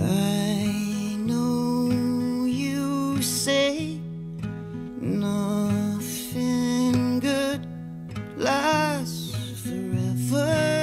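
A slow acoustic song played live: strummed acoustic guitar and held chords, with a wavering melody line over them.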